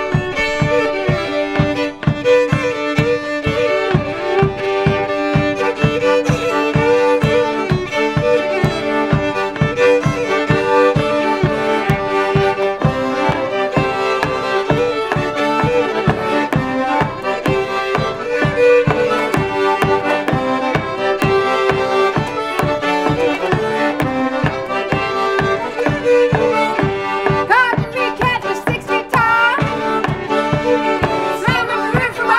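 Cajun tune played on fiddles, with a pedal-struck bass drum keeping a steady beat under the melody.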